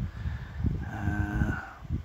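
A man's brief hummed, moo-like 'mmm', held for about a second in the middle, over a low steady rumble.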